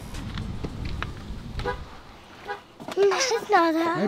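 Low outdoor rumble with a few light knocks as a small child climbs into a car, then about three seconds in a child's high-pitched, drawn-out voice with a wavering pitch.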